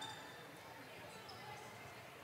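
Faint gymnasium ambience: a low murmur from the crowd in the stands, with no clear ball bounces or shoe squeaks standing out.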